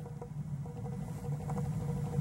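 Natural-gas heating boiler running: a steady low hum with a faint steady tone above it.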